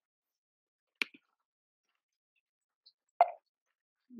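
Computer mouse clicks: a sharp click with a fainter one right after it about a second in, and a louder, duller plop near the end.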